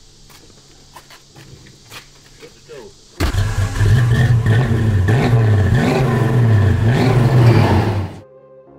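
1969 Dodge Charger's 426 V8 comes in suddenly about three seconds in and is revved up and down several times, loud and deep. Before it, only faint ambience with a few light clicks.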